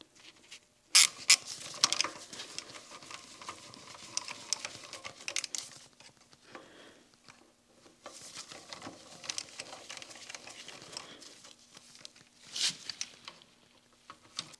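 Socket ratchet wrench clicking in quick runs as bolts are driven home, with a few sharp metal knocks from the tool against the machine's cast-iron casting.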